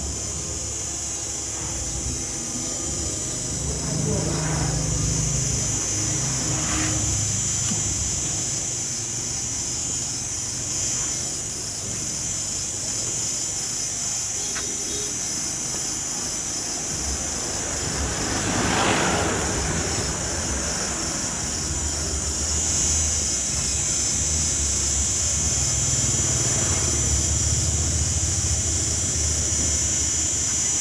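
Outdoor ambience: a steady high-pitched hiss over a low rumble, with a vehicle swelling and fading as it passes about 19 seconds in, and fainter passes earlier.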